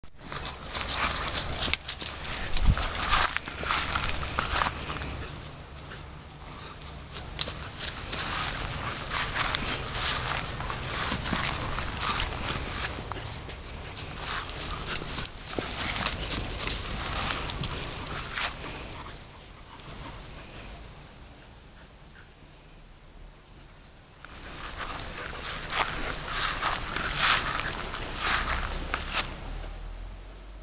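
Dogs playing together on grass: irregular dog vocal sounds and scuffling, with a quieter stretch about two-thirds of the way through.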